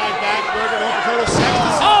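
A wrestler's body slamming onto his opponent and the wrestling ring mat after a flip off the top rope: one heavy thud a little over a second in.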